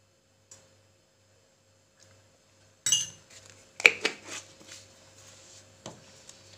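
Metal spoon clinking against dishes in a short cluster of sharp clinks, the loudest about four seconds in, with one more near the end.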